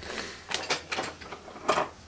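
Plastic snack packet crinkling as it is handled and turned over in the hands, in a few short rustles.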